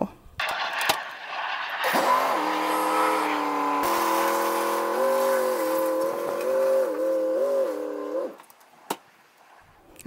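Pickup truck engine running as it drives, its note rising and falling a few times, then ending suddenly about eight seconds in.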